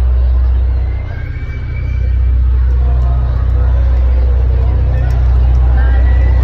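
Concert crowd cheering and screaming, with high held shouts and whistles, over a loud, steady deep bass drone from the PA. The drone dips briefly about a second in.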